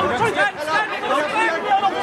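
Several voices of players and onlookers calling out and chattering over one another, with no words standing out.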